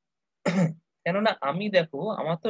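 A person clears their throat once, a short burst about half a second in, and speech follows about half a second later.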